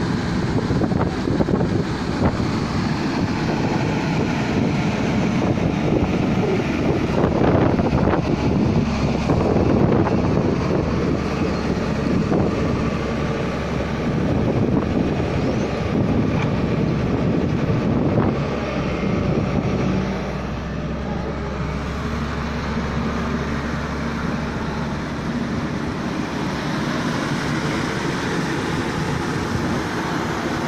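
Diesel engine of a JCB tracked excavator running close by as it works its bucket through piles of rubbish, with wind on the microphone. The engine noise eases a little about two-thirds of the way through.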